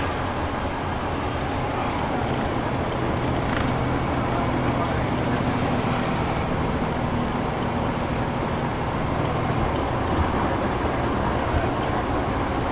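Inside a 2010 NABI 40-SFW transit bus under way: the Cummins ISL9 diesel engine runs at a steady low pitch beneath continuous road and tyre noise.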